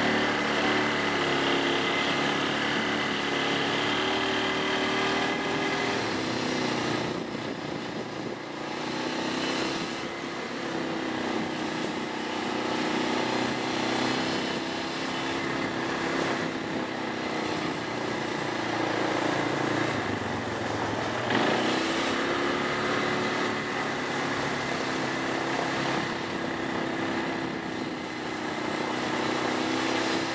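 A motor vehicle's engine running steadily as it moves slowly, its pitch rising and falling gently with the revs; about twenty seconds in it dips and then picks up again.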